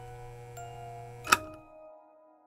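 Soft background music of bell-like mallet notes, like a glockenspiel or music box, over a low hum. A single sharp click sounds about a second and a quarter in; after it the hum stops and the notes fade away.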